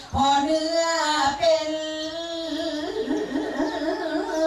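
Korat folk song (pleng Korat) sung by a single voice, long drawn-out notes that bend and waver in pitch, with short breaks for breath.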